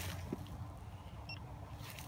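Low, steady outdoor rumble with a faint constant hum and a few soft clicks; no distinct event.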